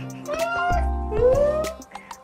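A cat meowing twice, each call rising in pitch, as it begs to be fed, over light background music.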